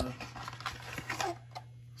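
Soft, scattered clicks and light rustles of objects being handled, over a steady low hum.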